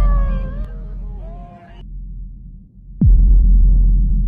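Soundtrack sound effects: a wavering, falling high tone that cuts off just under two seconds in, then about three seconds in a deep boom that sweeps sharply down in pitch into a heavy low rumble.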